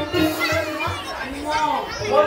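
A performer's voice, amplified through stage microphones, speaking over folk music accompaniment with a regular drum beat.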